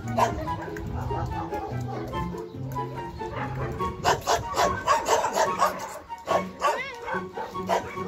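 A dog barking in a quick run of several barks from about halfway through, then one yelp that rises and falls in pitch, over background music.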